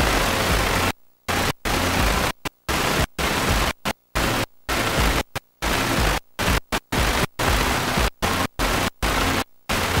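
Loud, even static hiss from the playback of a blank videotape. It cuts out to silence abruptly and briefly many times at irregular intervals.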